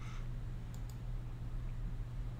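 A few faint computer mouse clicks, two close together a little under a second in and another near the end, over a steady low electrical hum.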